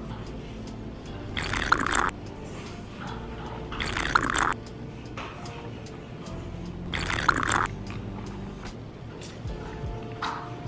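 Soft background music with three short slurping sips from a glass, each about half a second long, near one and a half, four and seven seconds in.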